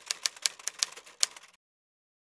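Typewriter keystroke sound effect: a quick, irregular run of sharp clicks, about five or six a second, that stops abruptly about one and a half seconds in.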